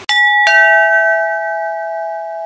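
Two-tone doorbell chime: a high note then a lower one struck about half a second apart, both ringing on and slowly dying away.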